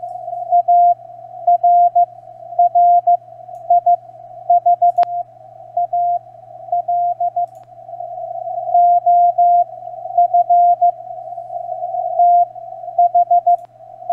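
Morse code from a strong amateur CW station on the 20 metre band, received on an SDR with the CW peak filter switched on: a single keyed tone in dots and dashes over hiss narrowed to the tone's pitch. A faint low hum runs beneath, and there is one sharp click about five seconds in.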